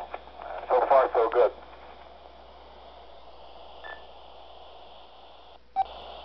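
Alinco DJ-X10 analog scanner's speaker playing received ham radio voice traffic. A short burst of speech comes about a second in, followed by steady open-channel hiss with a brief tone, and a few clicks near the end.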